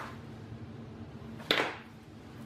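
A single short clack, about one and a half seconds in, as a hot glue gun is set down on a tiled countertop.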